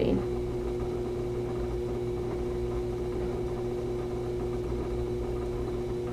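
Electric pottery wheel running with a steady motor hum.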